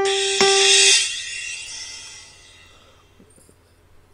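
Keyboard with a piano sound playing the last two notes of a sight-singing phrase, two repeated G notes (son); the second is held for about half a second and then fades away over the next two seconds, with a brief high hiss at the start.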